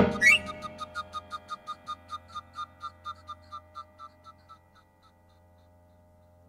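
Small handheld toy whistles blown by the players: a rising whistle glide near the start, then a run of short, quick toots that slow down and fade away. Under them a ringing chord dies out.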